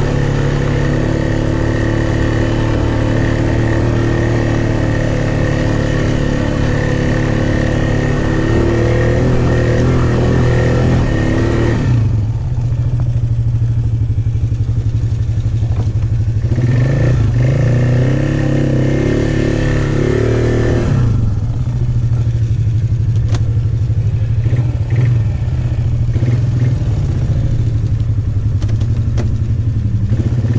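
ATV engine running as the quad is ridden over a rocky wooded trail. It is heard from the rider's seat, with the revs rising and falling several times as the throttle is worked.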